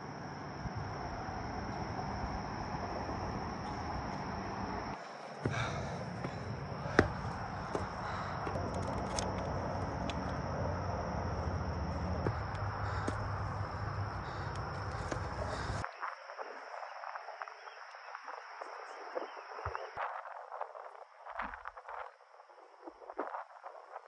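Outdoor ambience on a forested mountainside: a steady rushing noise with a thin, steady high-pitched drone over it. About sixteen seconds in, the rushing cuts off sharply, leaving a fainter, thinner background with scattered light clicks.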